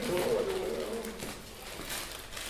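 A man's drawn-out wordless voice, a wavering hum, ending just over a second in.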